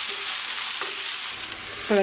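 Chopped onions and curry leaves sizzling steadily in hot oil in a metal kadai while being stirred.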